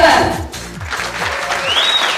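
Audience applauding over upbeat walk-on music with a steady kick-drum beat, which fades out about halfway through. A single high rising tone sounds near the end.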